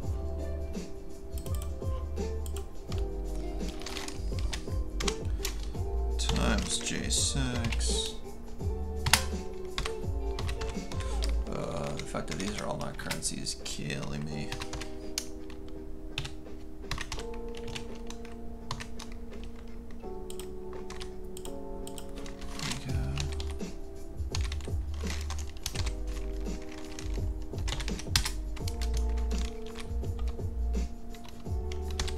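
Computer keyboard typing: a run of quick keystroke clicks throughout, over background music with a deep bass line and held chords that change every second or two.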